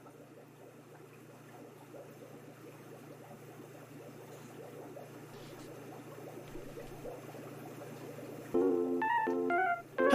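A low steady hum under a faint noise that slowly grows louder. Near the end comes a quick run of short electronic bleeps stepping up and down in pitch.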